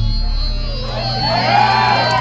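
A live rock band's last note ringing out as the song ends, a steady low amplified tone holding after the drums stop. About a second in, the audience starts cheering and whooping with rising and falling calls.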